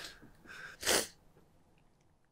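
A man's breathing noises: a soft breath, then a short, sharp, loud puff of breath about a second in.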